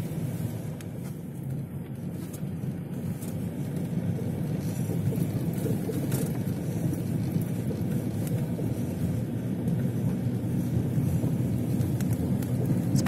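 Steady low rumble of a car driving, engine and tyre noise heard from inside the cabin on a snow-covered road, growing slightly louder over the stretch.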